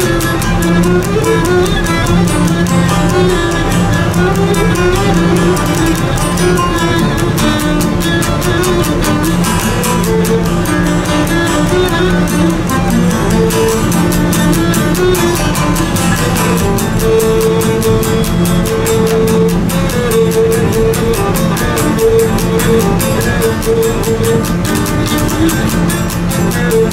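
Greek lyra bowing a lively dance melody over a laouto strumming a steady rhythm accompaniment, in the style of a Greek island syrtos.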